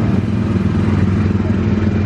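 Engine of an Autopia ride car running at a steady speed as it drives along its guided track, heard from the driver's seat.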